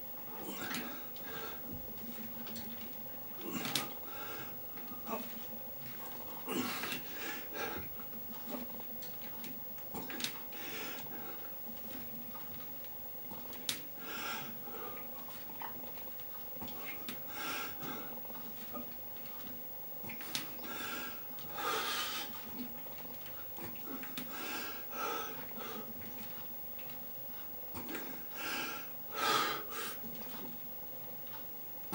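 A man breathing hard through a set of barbell back squats with 68 kg on the bar, with a forceful breath about every three seconds as he works through the reps. A faint steady hum runs underneath.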